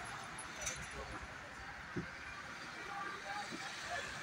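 Indistinct voices over a steady background hiss, with one short knock about halfway through.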